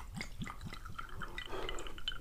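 Soju poured from a green glass bottle into a small glass over ice, the bottle glugging in a quick run of short gulps that stop after about a second.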